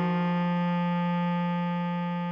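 A bass clarinet melody note, written G4, held steadily as one long tone over a sustained Eb minor keyboard chord.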